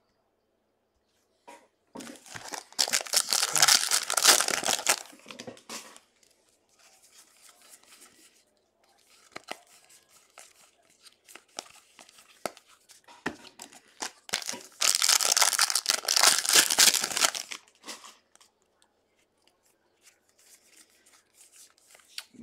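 Trading card pack wrappers being torn open twice, each rip lasting about three seconds, the second one about ten seconds after the first. Between the rips there are faint rustles and light clicks as the cards are handled.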